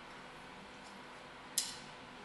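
Quiet room tone with a faint tap a little under a second in and one sharp click about one and a half seconds in, from push pins and layout blocks being pulled off a small stained-glass piece and handled on the bench.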